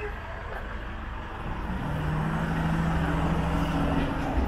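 An SUV's engine growing louder as it comes up close from behind, with a steady low hum setting in about halfway through.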